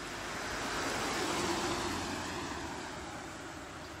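A car passing by on the road: tyre and engine noise swelling to a peak about a second and a half in, then fading away.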